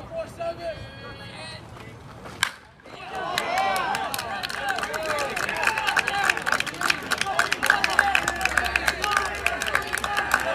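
A baseball bat strikes the ball with a single sharp crack about two and a half seconds in, then spectators shout and cheer, with scattered clapping.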